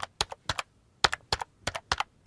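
Computer keyboard typing sound effect: about a dozen quick key clicks in irregular little runs, with a brief pause about half a second in, laid over animated on-screen text.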